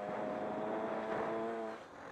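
Honda CR125 two-stroke single-cylinder engine held at high revs under throttle, then backed off near the end as its note drops away, with wind rushing over the helmet-mounted microphone.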